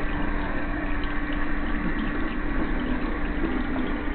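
Kitchen faucet running, water pouring and splashing into a stainless steel sink as a hand rinses under the stream, with a steady low hum underneath.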